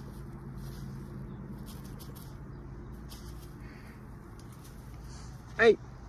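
A steady low hum with faint, scattered high chirps or ticks over it. A man calls out once near the end.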